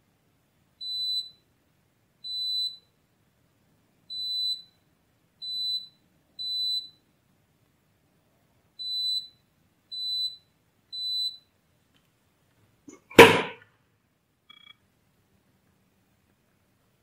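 KAIWEETS KM601 digital multimeter's continuity beeper sounding eight short high beeps, each about half a second, as the probes touch the adapter's pins: each beep shows a connection between the SMD IC pin and its DIP pin. About 13 s in there is a single loud knock.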